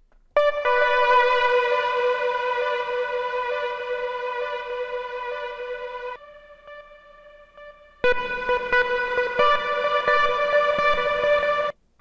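A software instrument plugin in the Akai MPC software, played on its own as a filler sound for a hip-hop beat: a held pitched note that starts just after the beginning and slowly fades. About six seconds in it drops to a quieter, thinner tone, then it is played again loud about eight seconds in and cuts off just before the end.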